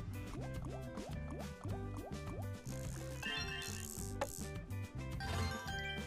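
Fishing-themed online slot game audio: looping background music with quick rising, bubbly blip effects, about three a second, as the reels spin.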